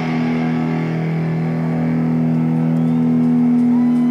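Distorted electric guitars holding one sustained chord that rings on and slowly grows louder, in a live rock concert recording.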